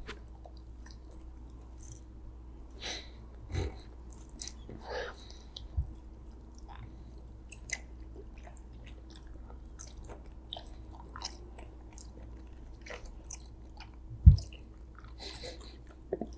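Close-miked chewing of soft gummy candy (rainbow sour candy strips and a gummy worm), with scattered wet mouth clicks and smacks over a faint steady hum. A single low thump stands out about fourteen seconds in.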